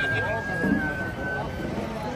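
A high flute note held steadily over the chatter of a street crowd.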